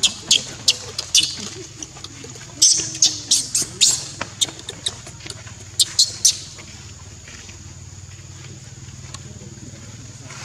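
Baby macaque giving a rapid series of short, shrill squealing cries that stop about six seconds in.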